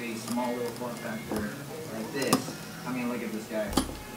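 Quiet background talk from a man's voice, not directed at the work, with two sharp clicks, the louder about two seconds in.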